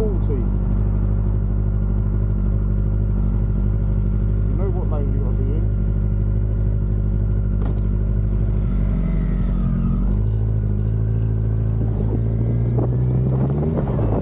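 Motorcycle engines idling steadily while stopped at traffic lights. The engine note shifts about nine to ten seconds in, then rises over the last couple of seconds as the bikes pull away.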